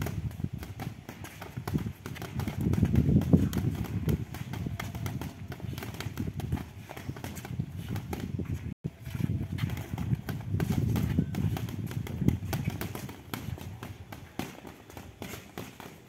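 Many light, irregular thuds of boxing gloves striking gloves and arms, mixed with shoes shuffling and stepping on paving stones, as pairs of boxers trade punches and counter-punches. The sound cuts out for an instant about halfway through.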